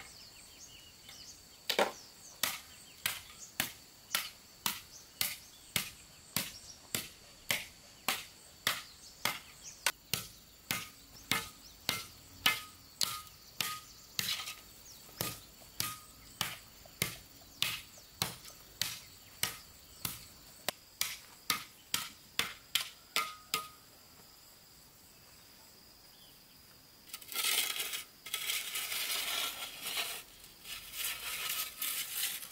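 A short-handled hoe chopping into dry earth, about two strokes a second, over a steady high insect whine. The strokes stop, and near the end a shovel scrapes and scoops through loose soil.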